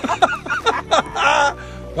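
Background music with a voice over it.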